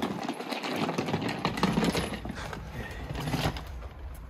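Footsteps on stone paving: irregular steps as a person walks up to a door.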